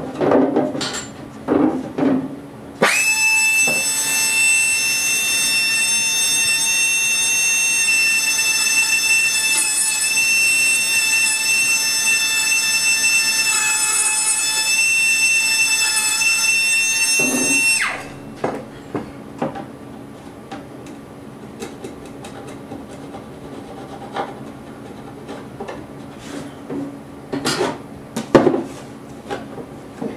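A small handheld high-speed rotary tool running for about fifteen seconds with a steady high whine, trimming the ends of the braces on a guitar back. Light wooden knocks and taps come before and after it as the back is handled on the rims.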